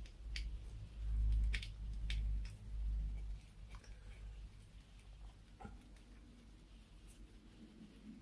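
Faint handling noise from hands working the screws on a 3D printer's print-head carriage: low bumps in the first few seconds and a handful of small sharp clicks, then quiet.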